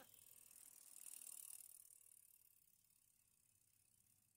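Near silence: a faint high hiss that swells slightly about a second in, then fades away.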